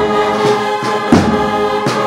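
Cornet-and-drum band (banda de cornetas y tambores) playing a procession march: massed cornets holding sustained notes over regular drum strokes.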